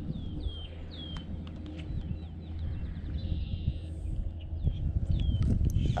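A bird calling repeatedly with short, high notes that slide downward, in a quick run near the start and again a few times later, over a steady low rumble with handling knocks that grow louder toward the end.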